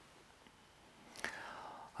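Near silence, then a little over a second in a lip click and a short, soft in-breath from a man drawing breath just before he speaks again.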